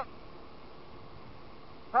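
Faint, steady running noise of a Yamaha Zuma 50F scooter's small engine under way, mixed with road and wind noise, with a faint steady hum.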